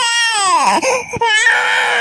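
Infant crying in loud wailing cries, the first falling in pitch, with two short catches of breath around the middle before the crying resumes.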